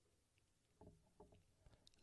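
Near silence: room tone, with a few faint short clicks in the second half.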